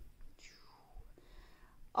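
A woman's soft breath, a faint whispery rush that sweeps down in pitch, with a couple of tiny ticks.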